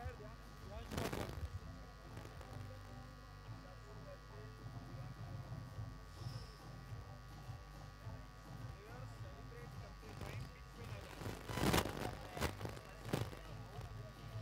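Faint, distant voices and murmur over a steady electrical hum, with a few brief louder voice-like sounds near the end.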